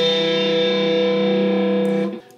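Electric guitar chord of G, B and E, held and ringing steadily, then damped right at the end.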